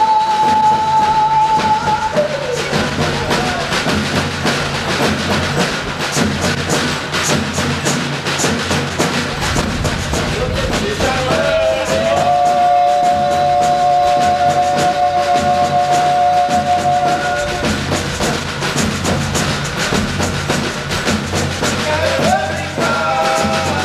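Live boi de mamão folk music: a group of drums beating a rhythm while a man sings into a microphone. He holds one long note that ends about two seconds in and another from about eleven seconds to seventeen.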